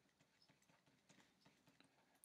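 Near silence, with a few faint taps of a stylus writing on a tablet.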